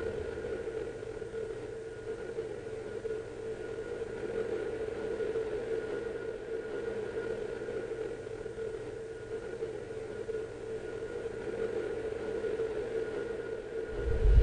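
A steady, unchanging dark drone: a held mid-pitched hum over a low rumble and hiss, the sustained sound-design bed under the closing credits.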